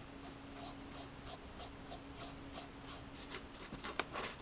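Paintbrush stroking white paint onto a cardboard shelf covered in glued paper towel: faint, quick scratchy brush strokes, about three a second.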